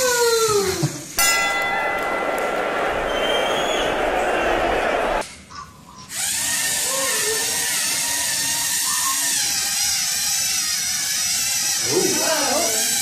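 Small electric motors of LEGO Mindstorms wrestling robots whirring as the robots drive into each other. The whir stays steady, with wavering high tones, and breaks off briefly about five seconds in before carrying on.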